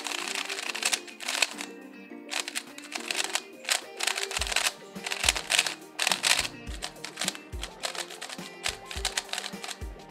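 MoYu MeiLong 3C plastic 3x3 speed cube being turned quickly: rapid clicking clacks of its layers. It is fresh out of the box with only factory lube. Background music plays under it, with a bass beat coming in about halfway through.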